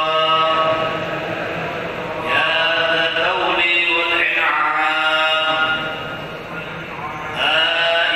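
Voices chanting a devotional recitation for the Nisfu Sha'ban night, with long, melodic held lines. It drops quieter about six seconds in, then swells back just before the end.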